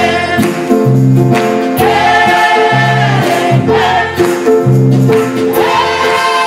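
Church choir singing a gospel song in sustained, vibrato-laden lines, accompanied by piano, drum kit with cymbals, and guitar over a rhythmic bass line.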